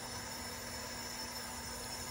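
Steady, even hiss with a faint low hum underneath, unchanging throughout.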